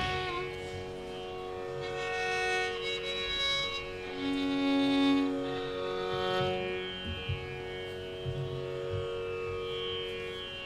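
Carnatic violin playing slow, sustained melodic phrases over a steady drone, with a few light drum taps in the second half.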